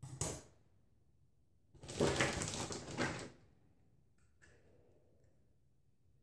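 Rustling and crackling of hair and perm rods being handled close to the microphone: a brief rustle, then a longer crackly stretch of about a second and a half, followed by two small clicks.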